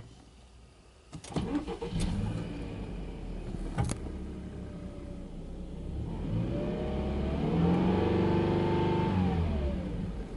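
Subaru Legacy B4 2.5i's 2.5-litre flat-four (boxer) engine, heard from inside the cabin. It cranks and starts about a second in, flares briefly, then settles to idle. From about six seconds in it is revved up smoothly, held, and drops back near the end.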